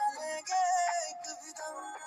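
A Hindi song: a singing voice over music.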